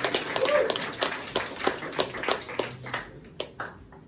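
Small audience clapping, the individual claps thinning out and dying away about three and a half seconds in.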